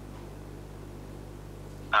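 Pause in speech: only a steady low electrical hum with faint background hiss.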